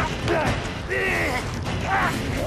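Men grunting and straining as they wrestle over a knife on the ground, with two or three strained, creaking grunts.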